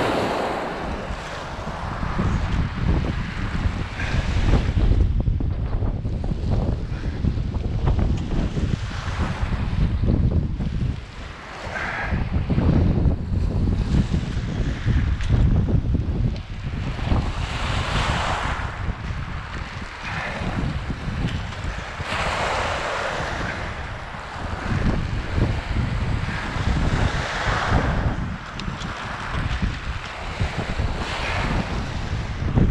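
Heavy wind noise buffeting the microphone, with small waves washing up onto a gravel shore in surges every few seconds.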